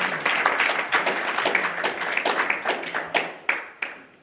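Congregation applauding: many hands clapping that thin out to a few last separate claps near the end and then stop.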